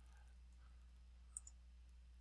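Near silence with a faint steady low hum, broken once about a second and a half in by a small, sharp computer mouse click.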